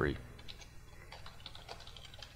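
Faint keystrokes on a computer keyboard, a few irregular taps a second, as a shell command is typed. A low steady hum runs underneath.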